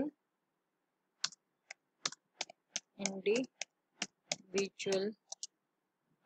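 Computer keyboard keys clicking as a word is typed, a rapid string of keystrokes starting about a second in, with a voice speaking briefly twice among them.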